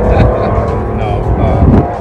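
A vehicle engine running as a loud, steady low rumble under men's voices and laughter.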